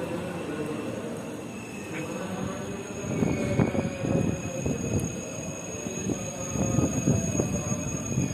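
Electric commuter train (KRL) running on the nearby rail line: a steady high whine over a low rumble, with irregular low thumps from about three seconds in.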